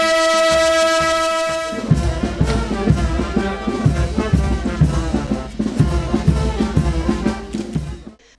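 A long steady horn note held for about two seconds. Then a brass marching band with drums strikes up a march with a steady beat.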